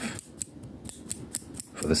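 Quick, irregular crisp clicks close to the microphone, several a second, made as an ASMR trigger.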